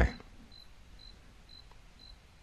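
A pause in a recorded talk: a man's voice trails off right at the start, then quiet room tone with a faint, short, high-pitched pip repeating about twice a second.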